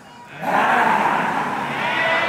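A group of fraternity men yelling and barking in dog-like calls, the Omega Psi Phi 'dog' sound, coming in loud about half a second in.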